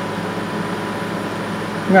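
Frigidaire window air conditioner running: its fan makes a steady rush of air with a faint, even hum underneath.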